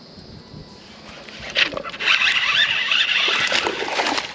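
A hooked bass thrashing and splashing at the water's surface beside the boat, starting suddenly about a second and a half in and going on loudly to the end.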